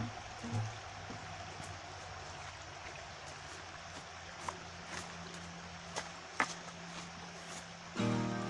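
Shallow rocky creek running, a steady rush of trickling water, with a few sharp clicks in the second half and a couple of brief low tones right at the start.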